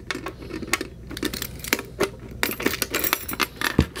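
A bunch of metal keys on a split ring clinking and jangling in the hands as a key is worked back onto the ring: a quick, irregular string of small metallic clicks.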